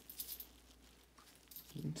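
A few faint clicks and rustles from gloved fingers handling a copper penny near the start, then quiet, with a voice beginning to speak near the end.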